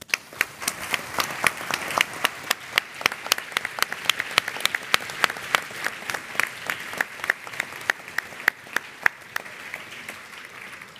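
Audience applauding: a steady crowd of clapping with several close, sharp individual claps standing out. It begins suddenly and thins slightly near the end.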